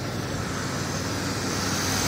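2001 Chevrolet Monte Carlo's V6 engine idling steadily, a constant low hum.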